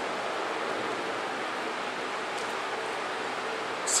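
Steady hiss of background noise with no speech, until a man's voice starts right at the end.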